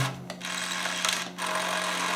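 Small DC gear motor of a homemade hovercraft's rudder drive whirring through its gears as it swings the aluminium-can rudders. It runs in two spells with a short break about a second and a half in.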